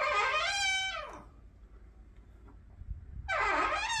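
Squeaky door of a brand-new Samsung Bespoke over-the-range microwave, giving a pitched squeal about a second long that bends and drops in pitch at the end.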